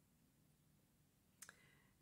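Near silence: room tone, broken by one faint, brief double click about one and a half seconds in.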